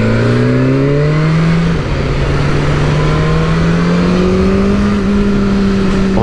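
The 2021 BMW S1000R's inline four-cylinder engine pulling hard under acceleration from the rider's seat, its pitch climbing. The pitch dips briefly about two seconds in, then rises steadily again, over a rush of wind noise.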